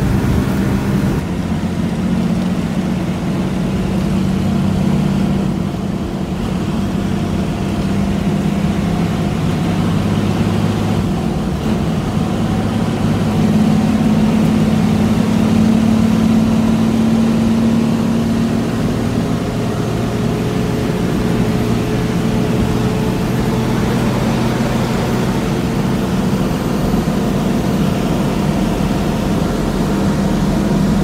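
Bus engine drone and road rumble heard from inside the front of a moving coach at highway speed. The engine note swells louder and higher for several seconds about halfway through, then settles back to a lower, steady drone.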